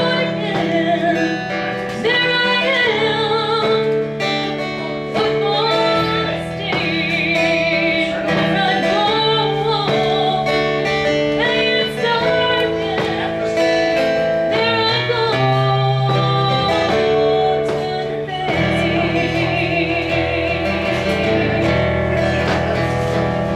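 Live music: a woman singing with guitar accompaniment. Her held notes waver with vibrato.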